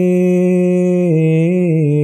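A man reciting an Ismaili ginan unaccompanied, holding one long sung vowel at the end of a line. The pitch dips and rises slightly about a second in.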